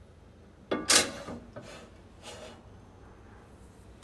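Kitchen items being handled on a counter: a sharp clatter about a second in, then a few softer knocks and rustles.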